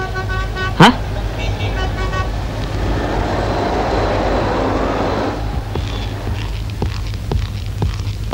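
Street traffic ambience: a sudden loud swoop falling in pitch just under a second in, then short vehicle horn toots and a steady traffic din that thins out after about five seconds.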